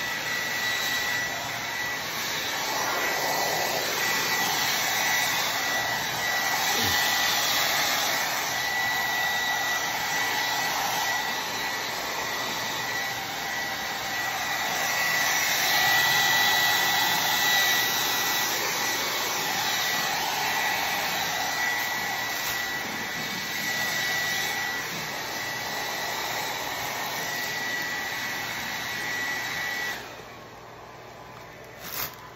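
Hand-held hot-air blower running steadily with a thin whine, heat-shrinking a cellophane gift-basket wrap. It grows louder and softer in turn and cuts off at the very end.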